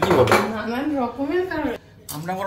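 Dishes and cutlery clinking as they are washed at a stainless steel kitchen sink, with a sharp clink right at the start, while a voice talks over it.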